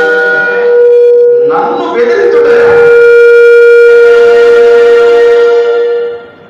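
Conch shell (shankha) blown in one long, steady, loud note, wavering and dipping briefly about two seconds in, then held until it stops at the end.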